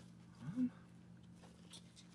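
A man's short, rising-pitched "hm" about half a second in, otherwise a quiet room.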